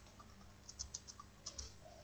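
Faint computer keyboard typing: a few quick keystrokes about a second in and a couple more a little later, as a word is typed.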